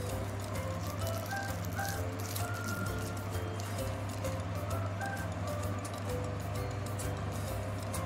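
Background music: a light, simple melody of short notes over a steady low hum, with faint crinkling of plastic candy wrappers being handled.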